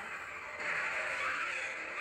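Anime fight-scene sound effect played back from the episode: a rushing blast of noise that swells in about half a second in, the sound of an energy attack.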